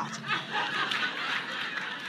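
A room full of people laughing and chuckling together at a joke.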